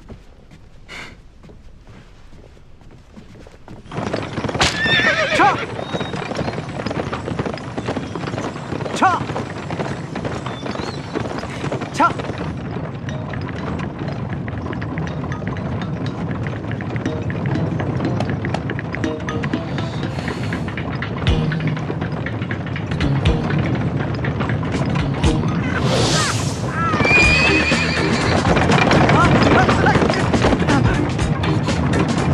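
Horse-drawn carriage on the move from about four seconds in: hooves clip-clopping, with horses neighing now and then and loudest near the end, over background music.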